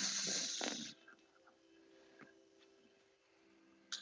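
A heavy, breathy exhale close to the microphone, lasting about a second, from someone catching their breath after a strenuous balance pose. Then near silence with a faint steady hum.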